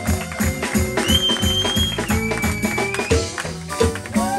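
Live jazz band playing a steady groove: plucked electric bass, electric guitar and hand percussion keep an even beat, with a high held note about a second in that steps down to a lower held note before fading near three seconds.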